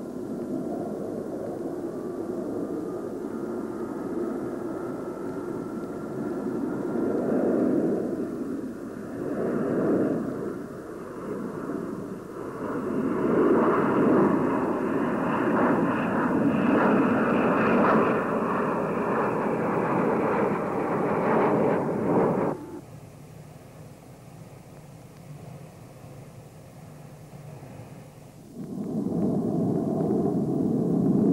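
Jet engines of a Tupolev Tu-144 supersonic airliner at takeoff power: loud, steady engine noise with a faint rising whine in the first few seconds, swelling and ebbing as the aircraft climbs away. It cuts off abruptly about 22 seconds in to a much quieter hum, and the loud engine noise comes back near the end.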